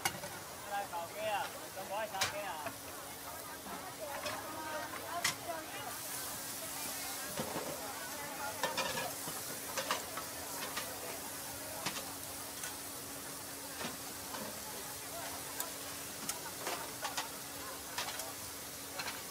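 Meat cutlets frying on a flat-top griddle, sizzling steadily, with scattered sharp clicks and scrapes of metal tongs turning the pieces.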